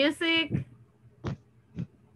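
A voice on a video call speaks briefly at the start, then breaks off. Two short, soft thumps follow about half a second apart.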